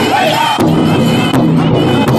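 Powwow drum group singing for men's traditional dancing: high, strained voices over a big drum, the singing breaking off about half a second in while heavy drum strikes keep coming about three quarters of a second apart.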